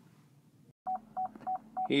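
Rear park-assist (backup sensor) warning of a 2013 GMC Acadia in reverse, beeping at one pitch about three times a second, starting about a second in after near silence: the sensors detecting an obstacle behind the vehicle.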